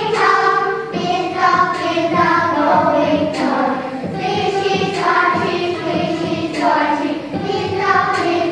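A children's nursery-rhyme song: young voices singing over a musical backing, in short phrases about a second long.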